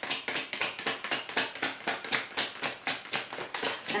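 A tarot deck being shuffled by hand: a quick, steady run of soft card slaps, several a second.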